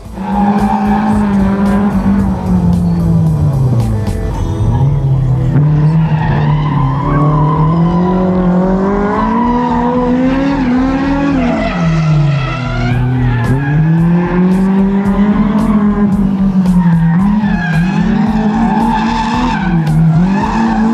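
Tuned Honda S2000's naturally aspirated four-cylinder engine revving hard as the car drifts, its pitch climbing and falling repeatedly with deep drops about four and thirteen seconds in, with tyres skidding on the track surface.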